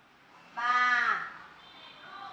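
A woman's voice drawing out one syllable for under a second, falling in pitch at its end, like a hesitant "um".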